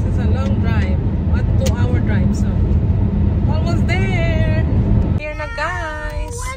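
Steady low road rumble inside a moving car's cabin, with a high voice heard briefly. About five seconds in, it cuts abruptly to background music.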